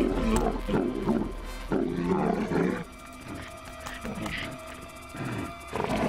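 Calls of two armored dinosaurs squaring off: a run of loud, wavering calls in the first three seconds, then fainter calls after, over background music.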